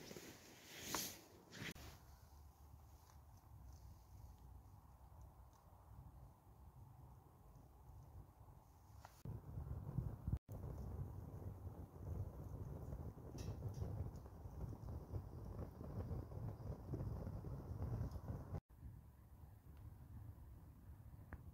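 A few rustles and sharp clicks in the first two seconds. From about nine seconds, a wood fire burning up the chimney of a Kelly kettle: a low, uneven rumble with faint crackles.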